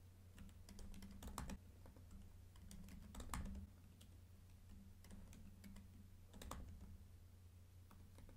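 Faint computer keyboard typing: short clusters of a few keystrokes at a time, separated by pauses, as short terminal commands are entered. A faint low hum sits underneath.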